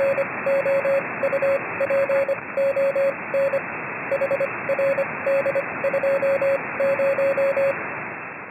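Morse code: a single-pitch beep keyed on and off in short and long marks, in groups, over a steady hiss of radio static, like a CW signal heard on a ham receiver. The beeping stops shortly before the end.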